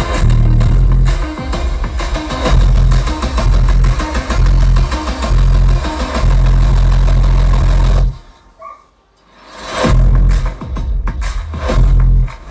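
Music played through a 2.1 stereo amplifier and speakers: a bass-heavy electronic track with a strong, steady low beat that cuts off suddenly about eight seconds in. After a brief near-quiet gap, a new trailer-style track begins with a rising swell and then sharp percussive hits.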